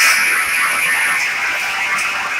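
Loud, steady buzzing drone of film-trailer sound design, with a thin high whine that cuts off about a second in.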